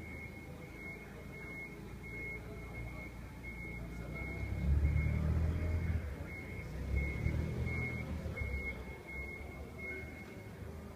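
Forklift warning beeper sounding a steady high beep about twice a second while the forklift drives, its engine rumble growing loud about halfway through as it passes close by.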